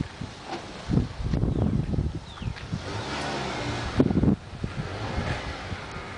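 Wind buffeting a handheld camera's microphone outdoors, low rumbling gusts that swell and drop unevenly.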